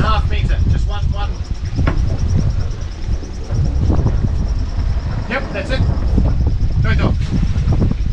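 Sailing yacht's inboard diesel engine running with a steady low rumble.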